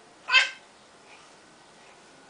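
A toddler's short, high-pitched squeal, once, about a third of a second in.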